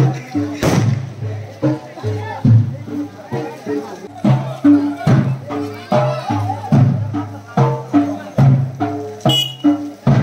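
Hand-beaten procession drums playing a loose, driving rhythm of about two strong beats a second, with the voices of a crowd over them.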